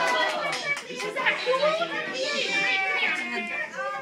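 Young children's voices chattering and calling out, several at once.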